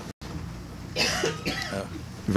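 A person coughing about a second in, followed by a few short throat and voice sounds, over a steady low room hum. The sound cuts out for a moment just after the start.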